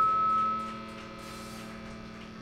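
A held note from the stage amplification fades out within the first second, leaving a faint, steady hum from the band's amplifiers between songs.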